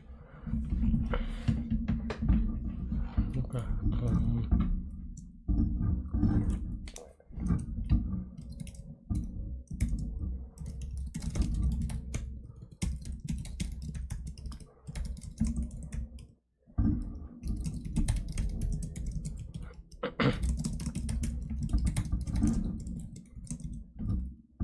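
Rapid typing on a computer keyboard, keystrokes in quick runs with brief pauses about five and sixteen seconds in.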